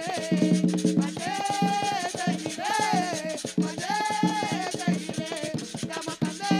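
Dominican palo music played live: women singing long held notes over a steady rhythm of palo drums, with jingling tambourines and a metal scraper.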